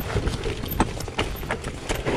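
Mountain bike rolling down a rocky stone path: the tyres knock over rocks and steps, with a few sharp clacks from the bike about a second apart, over a steady low rumble.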